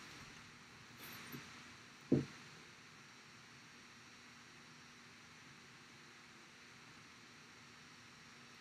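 Faint room hiss with one short, dull thump about two seconds in.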